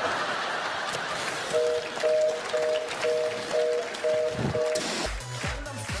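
Audience applause with a repeated two-pitch beep, about eight beeps in three seconds. Music with a beat starts near the end.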